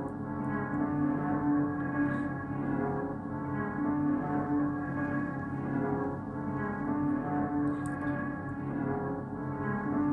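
A dark, ambient music sample plays back: steady, droning held tones with no drums. It is a granular-processed loop from a Portal preset, EQ'd with the lows and highs cut and given RC-20 vinyl-style noise and wobble.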